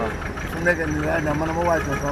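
A man talking inside a vehicle, with a low steady engine hum underneath.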